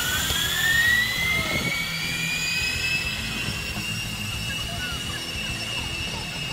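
Zip-line trolley pulleys running along the steel cable, a whine that climbs in pitch as the riders pick up speed, then holds steady.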